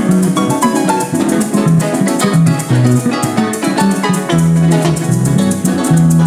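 Live llanera (joropo) music, instrumental: a llanero harp plays quick runs of plucked notes over a repeating bass line, with maracas shaking steadily.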